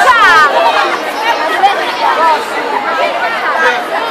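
Excited crowd of fans chattering and calling out all at once, many high voices overlapping. One high voice cries out, falling in pitch, at the very start.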